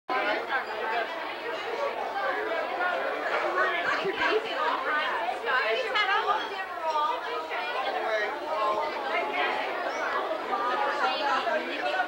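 Several people talking over one another at a dinner table, with the chatter of a busy restaurant dining room behind, a steady murmur of overlapping voices.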